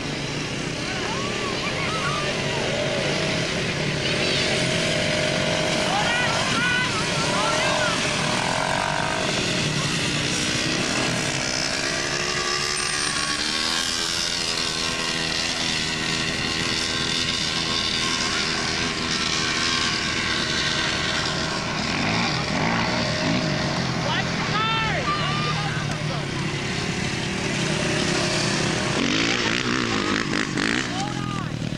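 Quad bike (ATV) engine running as the machine is ridden, its pitch rising and falling with the throttle, with voices calling out now and then.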